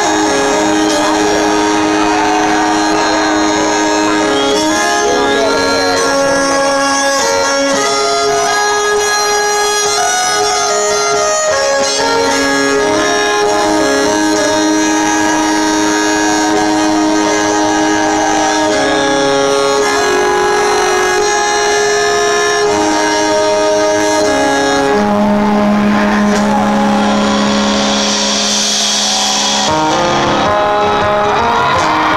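Solo fiddle amplified in an arena, playing a slow melody of long bowed notes with vibrato. A low held note comes in under it near the end.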